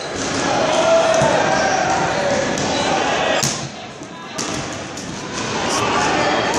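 Rubber dodgeballs thudding and bouncing on the floor and walls of a large, echoing gym, over a bed of shouting voices from players and onlookers.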